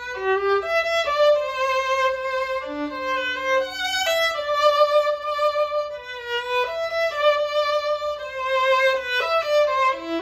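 Solo violin playing the opening phrase of a ballade: a slow, singing melody of held notes with vibrato.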